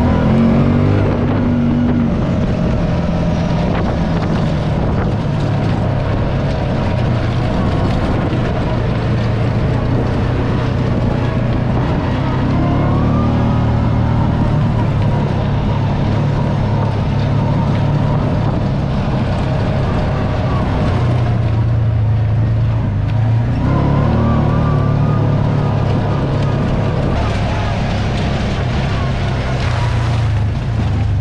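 Kawasaki Teryx side-by-side's V-twin engine running under way on a dirt trail, heard from the open cab with tyre and wind noise, its revs shifting with the throttle and easing off briefly about two-thirds through before picking up again.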